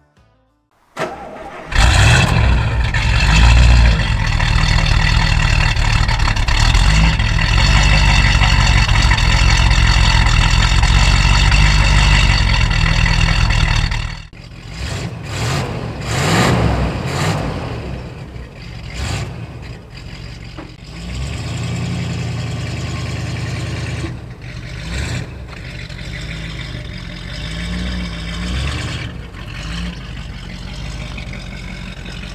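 1956 Buick Special's 322 cu in Nailhead V8 starting up about two seconds in, then running loud and steady. From about fourteen seconds in it is quieter and more uneven, with a few small rises in speed.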